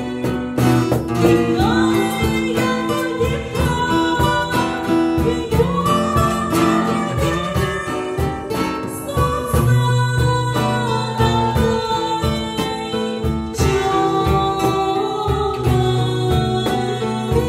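A woman singing a slow song into a microphone, accompanied by strummed and plucked acoustic guitar.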